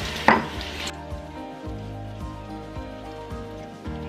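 Tap water running into a bathroom sink over a silicone brush-cleaning pad, with a sharp knock just after the start; about a second in the water sound cuts off and background music with sustained notes and a soft beat carries on.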